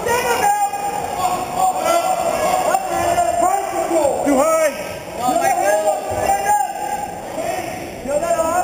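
Several voices shouting over one another in a gymnasium: coaches and spectators yelling at wrestlers during a bout.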